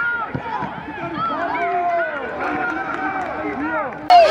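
Many voices calling and shouting over one another during a youth football match, with no clear words: young players and onlookers at the pitch.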